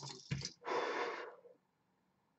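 A woman's deliberate long exhale, an audible breathy rush lasting about a second, taken as part of a guided breathing exercise.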